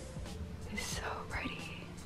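A faint, breathy whispered voice over low room tone.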